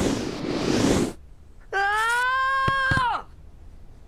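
Cartoon transition sound effect: a whoosh over the first second, then a held high-pitched call-like tone for about a second and a half that sags in pitch as it ends, with two light clicks near its end.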